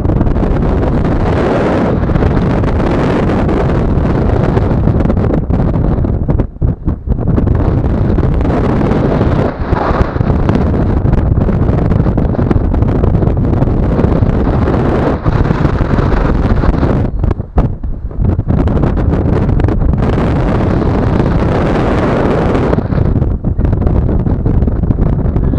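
Loud wind noise on the microphone from the airflow of a paraglider in flight, steady and rushing, dropping briefly a few times.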